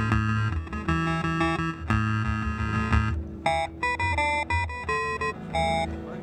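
Electric guitar played through a combo amp: sustained chords for the first three seconds, then a run of single picked notes.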